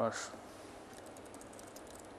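A quick run of light keystrokes on a computer keyboard, starting about a second in, as a command is typed into a Python shell.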